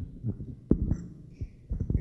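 Handheld microphone being handled: a few low thumps and knocks, the strongest about two-thirds of a second in.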